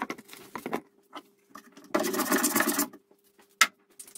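Things being handled on a wooden workbench: light knocks and taps in the first second, about a second of scraping in the middle, and a sharp knock shortly before the end.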